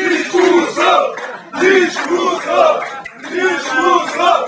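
A group of men shouting a rhythmic chant together in phrases of repeated syllables, with short breaks between phrases, about one and a half and three seconds in.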